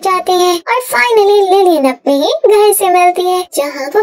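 A high-pitched voice narrating in quick phrases with brief pauses between them.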